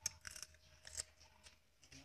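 Faint, crisp crunches of a firm unripe green plum being bitten and chewed: a few short clicks about a third of a second in and again around one second.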